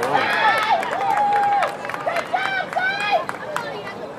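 Spectators shouting and yelling over each other during a youth football play, several high voices calling out long held shouts, with sharp clicks mixed in; the shouting dies down near the end.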